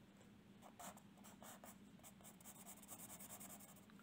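Faint, quick scratching strokes of a marker pen on paper, starting under a second in, as a small square is drawn and shaded in.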